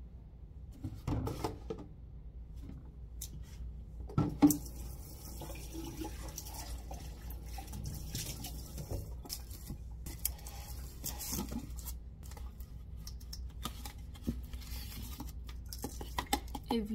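Plastic shaker cup and lids knocking and clinking on a kitchen counter while tap water runs into the cup. The loudest knock comes about four seconds in.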